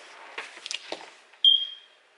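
A cardboard camera box being handled on a table, with a few light taps and clicks, then a short high-pitched tone about one and a half seconds in that is the loudest sound and fades within half a second.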